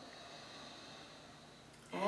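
Quiet room with a faint, soft exhaled breath in the first second or so; a woman's voice starts right at the end.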